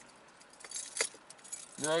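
A few faint, light clinks and ticks, the sharpest about a second in, in a pause between speech.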